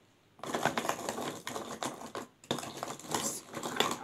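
Crinkly crackling in two spells, one of about two seconds and one of about a second and a half: hands pulling out and handling frozen hollowed vegetables for stuffing.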